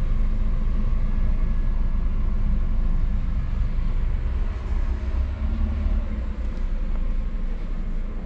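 Steady low mechanical hum and rumble in the cab of a switched-on battery-electric coach, from its running onboard equipment.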